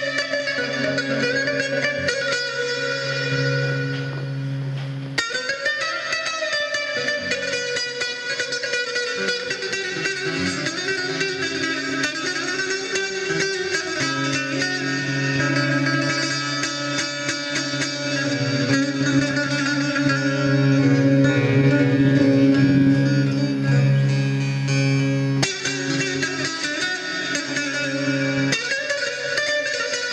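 A Sönmez Müzik-made long-necked bağlama (saz) played with quick picking: a fast melodic run over steady ringing drone strings.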